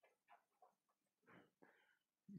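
Near silence with faint scratching of a pen writing on paper, a string of short strokes.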